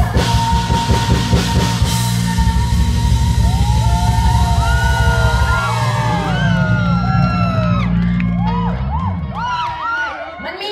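Live rock-style band with drum kit, bass and guitar playing the final bars of a song, with a long held note early on. Overlapping shouts and whoops rise over the music in the second half, and the band stops shortly before the end.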